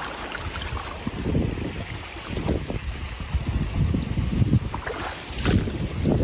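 Wind buffeting the microphone: an irregular low rumble that swells and eases in gusts.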